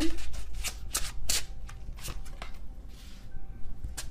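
A deck of tarot cards being shuffled: a quick run of card clicks and flutters for the first two and a half seconds or so, then only faint handling.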